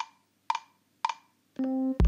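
GarageBand's metronome count-in on an iPad: three sharp clicks about half a second apart, then near the end a sustained electric piano note starts as recording begins.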